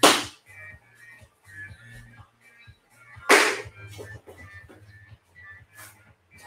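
Two sharp slaps about three seconds apart, with a lighter one near the end: someone swatting at a flying insect.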